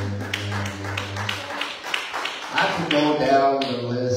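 Rhythmic hand claps, about four a second, over a steady low tone and a man's amplified voice; the voice gets louder from about three seconds in.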